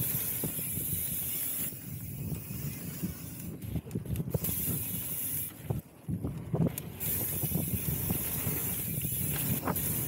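Mountain bike rolling fast down a packed-dirt singletrack: the tyres rumble on the dirt, with many short knocks and rattles as the bike goes over bumps. A steady high hiss runs over it and drops out briefly about four seconds in and again around six seconds.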